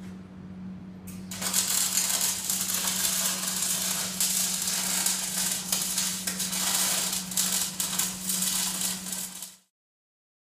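Electric arc welding on a steel trailer chassis: a dense, steady crackling that starts about a second in and runs until it cuts off near the end, over a steady low hum.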